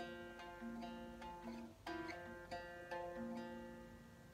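Acoustic travel guitar fingerpicked: a short instrumental passage of single plucked notes and small chords, each left to ring, dying away near the end.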